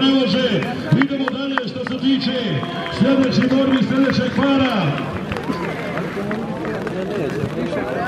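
A man's voice calling out in short, rhythmically repeated rise-and-fall shouts, with a few sharp clicks about a second in.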